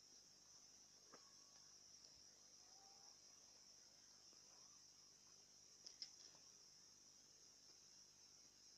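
Near silence with a faint, steady high-pitched insect chorus, like crickets, and a couple of faint clicks, one about a second in and one about six seconds in.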